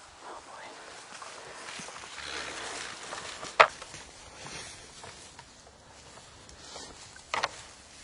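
Two bull moose sparring, their antlers clashing: one sharp crack about three and a half seconds in, the loudest sound, and a second double knock near the end.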